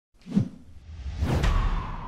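Intro whoosh sound effect: a short low thump, then a rising swish that swells to a peak over a low rumble.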